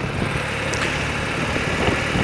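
An old BMW motorcycle's engine running at a steady pace on the move, with wind and road noise over it.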